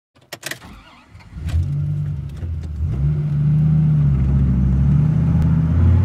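A few clicks as the ignition key turns, then a Subaru's flat-four engine cranks and catches about a second and a half in and settles into a steady run. Around three seconds in its pitch and level step up, and it holds there.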